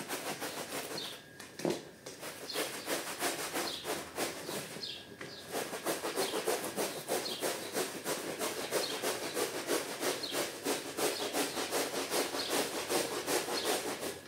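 Stiff-bristled push brush scrubbing a wet, soap-foamed rug in quick back-and-forth strokes. The strokes are sparse for the first couple of seconds, then settle into a steady, even rhythm.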